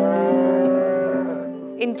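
A cow mooing once in one long call that rises slightly in pitch and fades after about a second and a half, over soft sustained background music.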